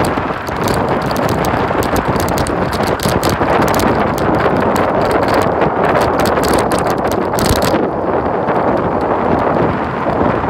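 Wind buffeting a phone's microphone on a moving 49cc scooter: a dense, steady rush with constant crackling pops.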